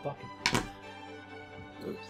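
A single short knock about half a second in, over soft background music of steady held tones.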